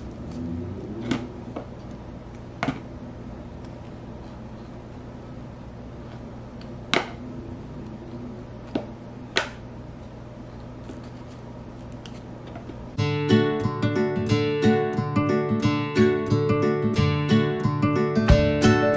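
Strummed acoustic guitar music that comes in suddenly about two-thirds of the way through and is the loudest sound. Before it, a quiet room with a low steady hum and a handful of sharp clicks from a peeler paring the skin off a mango.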